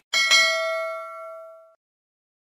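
Notification-bell sound effect: a bright ding struck twice in quick succession, ringing on and fading out over about a second and a half, as in a subscribe-and-bell animation.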